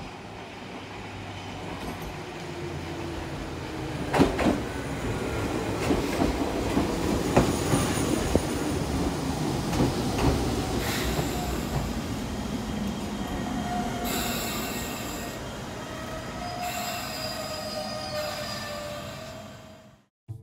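Nagano Electric Railway 8500 series electric train pulling into the platform, growing louder with a few sharp clacks from the wheels over rail joints. In the second half a high-pitched squeal sets in as it slows.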